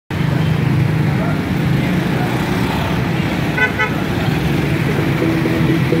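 Busy road traffic of motorbikes and cars, running as a steady din with a low engine hum. About halfway through a horn gives a quick run of short toots. Near the end a song with guitar comes in over the traffic.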